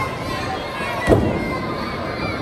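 A single sharp slap of a strike landing between lucha libre wrestlers, about a second in, over shouting and chatter from a small crowd.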